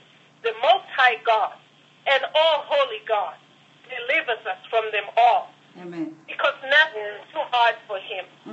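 A person talking in continuous phrases, sounding thin and narrow as if heard over a telephone line.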